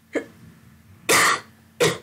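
A woman coughing three times in quick succession, the second cough the loudest and longest.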